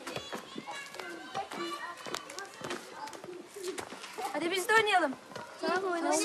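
Children shouting and calling out during a game of leapfrog, many high voices overlapping, with the loudest shouts about four and a half seconds in and again just before the end.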